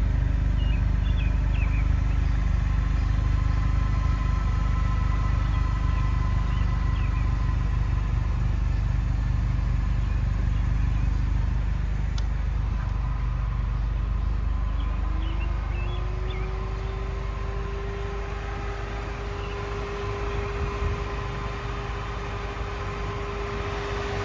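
A car engine idling with a steady low rumble and a faint hum. About fifteen seconds in, the hum rises in pitch and then holds steady.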